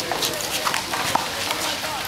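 Sneaker footsteps tapping and scuffing on an asphalt court, with a handful of sharp, irregular taps over outdoor background noise.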